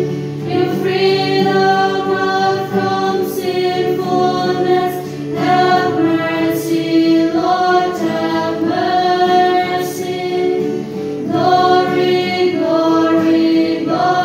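A church choir singing a hymn of the Mass in long held notes, phrase after phrase, with short breaks between phrases.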